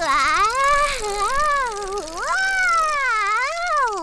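A cartoon character's high, wordless crooning: one unbroken line of voice that glides up and down in pitch, wavering at the start.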